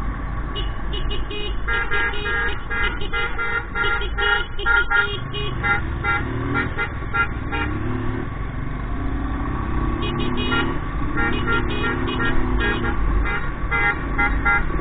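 Motorcycles riding along a road: a steady rumble of engine and wind, with runs of short, rapid horn toots.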